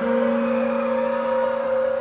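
A sustained keyboard synthesizer chord, held steady as a drone in a slow concert intro.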